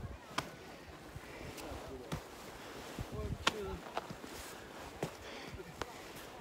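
Quiet outdoor ambience with a few short, sharp knocks and rustles scattered through it, and faint voices in the background.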